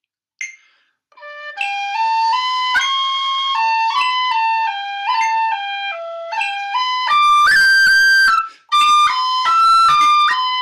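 Tin whistle playing a looped phrase of a jig in 6/8, note by note in quick steps with cuts and rolls. It starts on a low note about a second in and climbs to its loudest, highest notes near the end, with a short break for a breath just before. A metronome ticks at 50 beats a minute as the playing begins.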